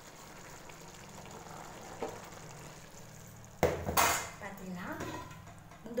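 Metal cookware clanking: a loud clank a little past the middle, a second one just after, then lighter knocks and scrapes, over a low steady hum.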